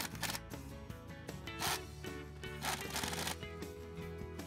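Background music with three short rattling bursts of a pneumatic impact wrench running U-bolt nuts onto a trailer axle's spring plate.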